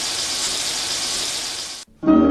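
Chopped onions frying in fat in a large steel pot: a steady sizzle that cuts off suddenly near the end.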